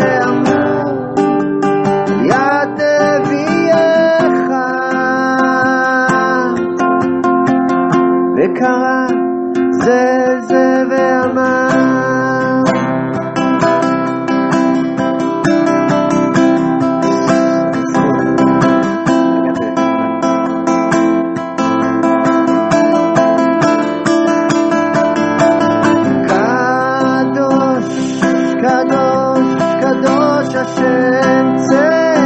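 Acoustic guitar strummed steadily under a wordless sung melody, a Hasidic-style niggun.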